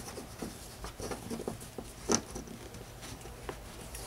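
Nylon paracord rustling and rubbing as hands thread it behind the core strands and up through the loop of a cobra weave knot. There are light irregular ticks throughout and one sharper click about two seconds in.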